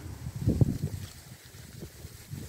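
Low, gusty rumble of wind buffeting the microphone, stronger in the first second and then easing off.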